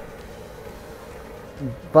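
Handheld butane gas torch burning steadily with a hiss and a faint buzzing hum, its flame held on firewood and fire starter to light a wood sauna stove.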